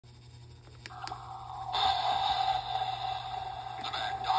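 Halloween animatronic Frankenstein prop starting up: two small clicks about a second in, then a sudden, steady, noisy hum with a held tone from just under halfway through.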